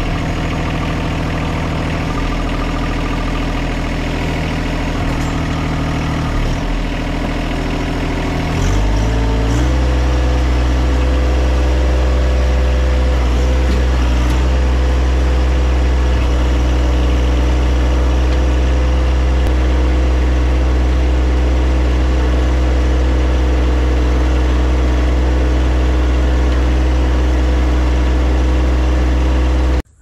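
John Deere 1023E compact tractor's three-cylinder diesel engine running steadily. About nine seconds in it is throttled up, and its pitch rises and holds at the higher speed. It cuts off suddenly just before the end.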